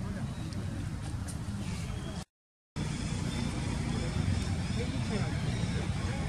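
Steady outdoor background noise with a low rumble and faint distant voices; the sound drops out completely for about half a second a little after two seconds in.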